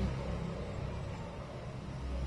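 Steady low rumble of city traffic noise, easing slightly in level.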